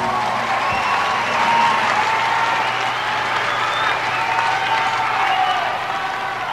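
Concert audience applauding and cheering, with scattered shouts and calls over the clapping.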